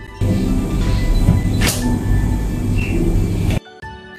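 Stainless steel bench scraper pressed down and worked through a sheet of rolled dough on baking paper over a wooden table, trimming the edges: a loud, dense scraping and knocking with one sharp scrape in the middle. It starts abruptly just after the opening and cuts off abruptly near the end, over background music.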